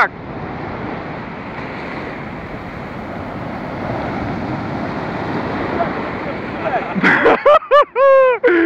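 Sea surf breaking and washing up the beach, a steady rush that swells a little about halfway through.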